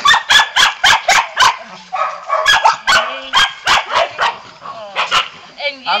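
Puppies barking in short, high-pitched yaps, quick runs of about four barks a second: one run in the first second and a half, another after a short gap, then a few scattered barks.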